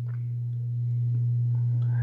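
Steady low electrical hum: one pure, unchanging tone with nothing else over it, getting slightly louder through the pause.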